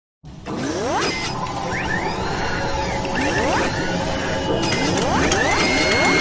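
Sound-design effects for an animated mechanical logo intro: whirring machinery with rising servo-like sweeps about every two seconds, and a run of ratcheting clicks and clanks in the second half, ending on a held tone.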